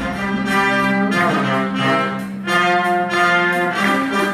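Live orchestra playing held chords, with brass prominent; the chord changes about a second in and again around two and a half seconds in, over a thin bass.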